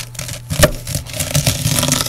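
Large kitchen knife cutting across shredded cabbage on a wooden cutting board. A single knock of the blade on the board comes about half a second in, then a quick run of slicing cuts through the cabbage in the second half.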